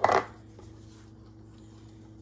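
A short clatter of kitchenware against a nonstick pot right at the start as butter goes in, then a quiet kitchen with a faint steady hum while a silicone spatula pushes the butter around.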